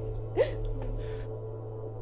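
A woman crying: one sharp, catching sob that leaps up in pitch about half a second in, followed by a breathy exhale, over a low steady drone.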